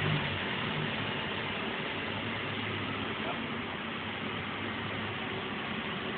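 Honda Integra Type R's 1.8-litre four-cylinder VTEC engine idling steadily on a dyno, under an even hiss.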